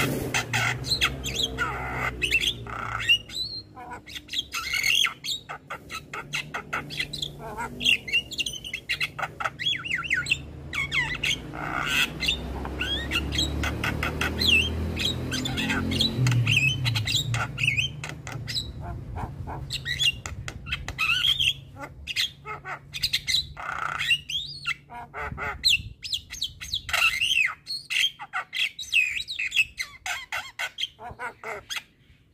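Javan myna singing a long, busy run of harsh squawks mixed with short chirps and whistled glides, with barely a pause between them.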